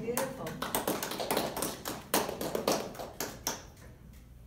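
A small audience applauding after a solo violin piece: irregular, overlapping hand claps for about three and a half seconds, with voices mixed in, stopping shortly before the end.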